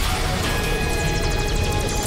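Dramatic cartoon soundtrack music with a sci-fi energy-beam effect: a dense crackling hiss under steady held tones as power is transferred between the robots.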